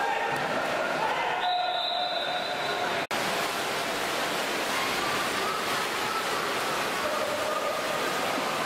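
Steady ambience of a water polo game in an indoor pool: water splashing under the echoing voices of players and spectators. In the first few seconds a high tone holds for about a second and a half, and the sound drops out for an instant about three seconds in.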